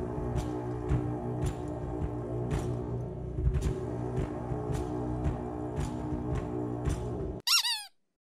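Two long bronze lur horns holding a low, steady drone, with a drum struck about twice a second, in live folk music. The music cuts off suddenly near the end, followed by a short chirp that falls in pitch.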